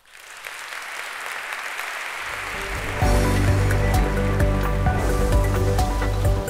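Audience applause rising at the close of a talk, then closing theme music with a strong bass line coming in about halfway and playing over the clapping.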